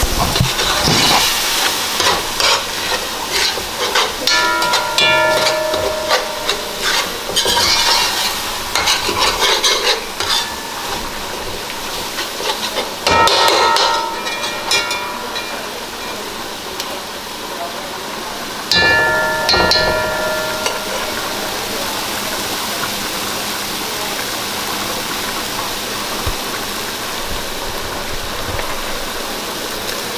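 A spoon scraping and knocking against a large metal pan as a curry is stirred, each knock leaving a short ring from the pan, over the sizzle of the curry cooking. The stirring thins out past the middle, with two louder knocks, and a steady sizzle carries the second half.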